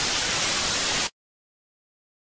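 Television static sound effect: an even, loud hiss that cuts off abruptly a little over a second in, leaving dead silence.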